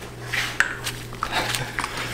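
Scattered light metallic clicks and clinks of a socket wrench and spark plugs being worked out of a car engine's plug wells, about half a dozen spaced irregularly, over a steady low hum.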